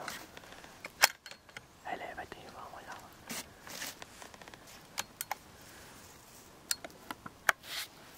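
Hushed human whispering, broken by several sharp clicks. The loudest click comes about a second in.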